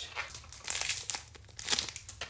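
Rustling and crinkling as hands handle a makeup brush, in several short bursts, the loudest shortly before the end.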